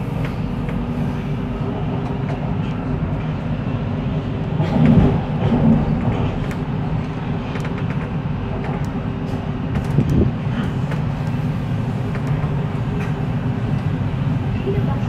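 Steady low rumble heard from inside a Siemens Inspiro electric metro train on the MRT Sungai Buloh-Kajang Line, wheels running on the rails. There are two louder bumps, about five seconds in and about ten seconds in.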